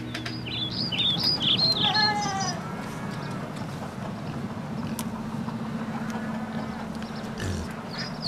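Birds calling: a quick run of high chirps in the first couple of seconds, with a lower call falling in pitch about two seconds in. A steady low hum runs under the rest.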